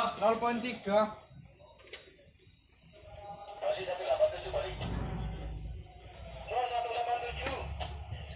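Indistinct men's voices, with a quieter lull about two seconds in and a low rumble underneath around five seconds in.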